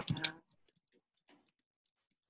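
Faint computer-keyboard keystrokes: a scattering of light, irregular clicks as text is typed.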